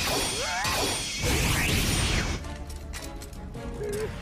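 Anime fight soundtrack playing back: dramatic music under a loud crash of impact sound effects, loudest between about one and two seconds in. Near the end a character lets out a laughing cry, "Huuu!"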